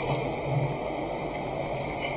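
A pause in speech: the steady background hiss of the room microphone, with a faint low hum.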